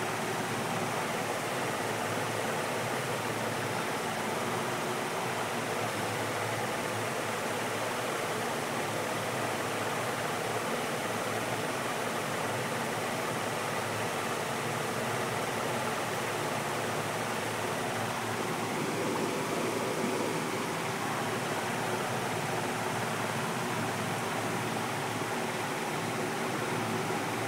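Steady, even rushing of water in a fish tank, the sound of the aquarium's water circulation and aeration.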